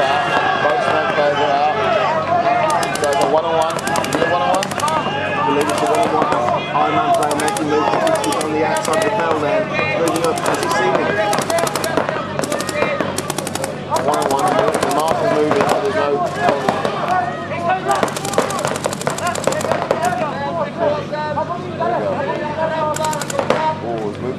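Paintball markers firing rapid strings of shots, several guns in bursts that start and stop every second or two, with the longest stretch of steady fire about three-quarters of the way through.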